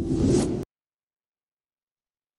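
Whoosh sound effect over a low rumble, cutting off suddenly just over half a second in, then dead silence.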